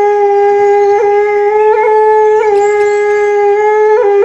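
Balinese bamboo suling flute holding one long, steady note, ornamented with brief grace-note flicks now and then and a slight dip in pitch about halfway.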